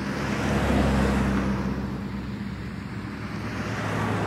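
Road traffic noise: a vehicle's engine hum with a rush of tyre noise, swelling about a second in and then easing to a steady background.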